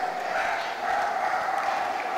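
Audience clapping steadily in a large, echoing hall, over a faint constant hum.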